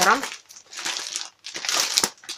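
Clear plastic clothing packs crinkling as they are handled and shifted, in several irregular rustles, the loudest near the end.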